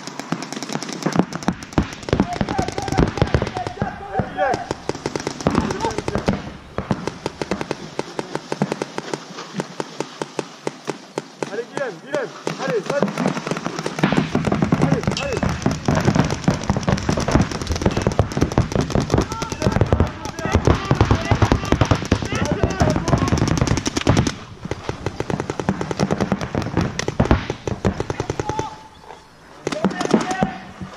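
Paintball markers firing rapid strings of shots, several guns at once, heaviest in the second half and thinning out just before the end.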